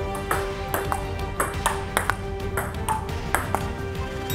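Table tennis rally: a ping-pong ball clicking off the table and paddles, about three hits a second, over background music with a held note.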